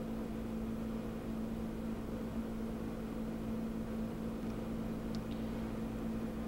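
A steady low electrical or machine hum, even in level throughout, with two faint ticks about five seconds in.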